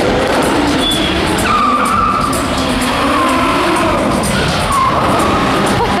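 Stunt cars driving hard around a paved arena, engines running under a steady noise of tyres, with tyre squeals from skids about a second and a half in, around three seconds and again near five seconds.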